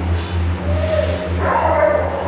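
Background music with a steady beat, and two short whines from an Alaskan Malamute.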